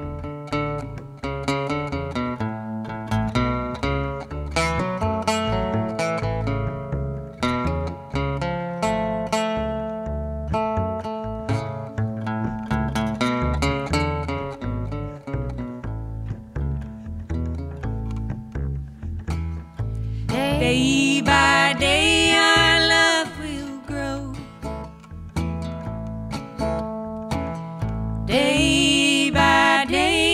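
Acoustic guitar picking a melody over plucked upright bass in an old-time country song. Singing comes in for a few seconds about two-thirds of the way through, and again near the end.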